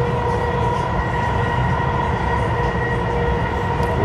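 Dubai Metro train running, heard from inside the carriage: a steady rumble of the train in motion with a steady high whine over it.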